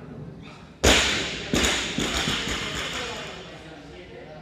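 A loaded barbell with bumper plates is dropped from overhead onto the gym floor: one loud impact about a second in, then it bounces twice more and a few times smaller. The steel bar and plates rattle and ring, dying away over the next two seconds.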